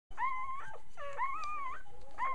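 A young puppy whining: two long, high-pitched whines, each holding its pitch with a slight waver.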